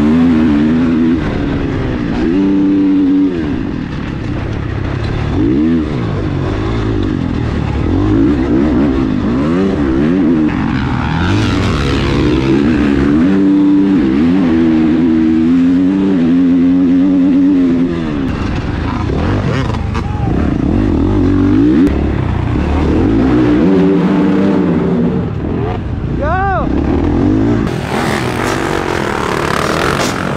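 Dirt bike engine heard up close from the bike, revving up and backing off over and over, its pitch climbing and dropping as the rider accelerates and shuts off around the motocross track.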